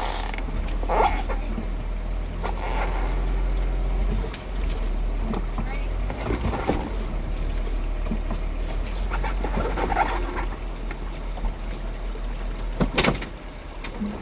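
A Jeep's engine running with a steady low hum that dips briefly about four seconds in, with a few sharp taps scattered through, the loudest near the end.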